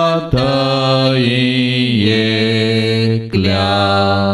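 Devotional singing of a Konkani hymn in long, held notes, with the pitch sliding down about two seconds in.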